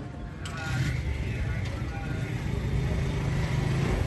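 A vehicle engine running as a low, steady rumble that comes up about half a second in, with faint voices over it.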